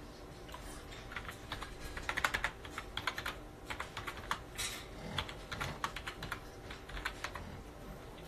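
Typing on a keyboard: fairly quiet runs of quick, irregular key clicks, starting about a second in and thinning out near the end.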